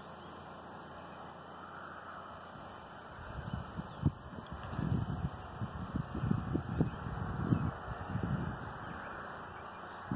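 Low, irregular rumbling and bumping on a phone microphone, starting about three seconds in and dying away near the end, over a faint outdoor hush.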